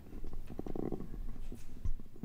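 Muffled handling noise on a desk microphone: a low rumble with light knocks, and a heavier thump near the end.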